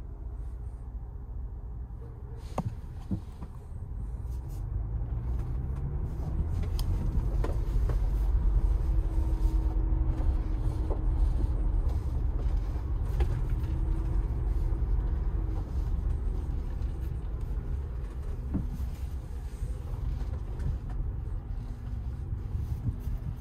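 A 2021 Ford Bronco heard from inside the cabin as it is put in gear and driven slowly: a low engine and road rumble that swells a few seconds in and eases toward the end, with a few light clicks.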